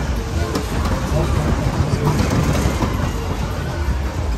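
Whip ride cars rolling across the ride's metal deck: a steady heavy rumble and rattle of wheels on steel, with people's voices mixed in.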